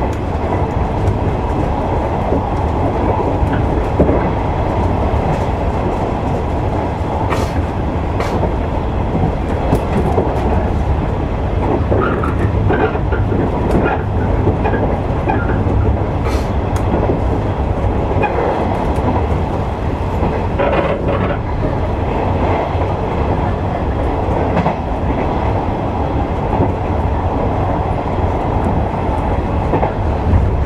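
Electric train running at speed, heard from inside the driving cab: a steady rumble of wheels on rails and running gear, with a few sharp clicks along the way.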